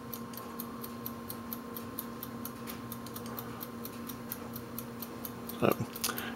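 Faint steady electrical hum with a rapid, even light ticking, about five ticks a second.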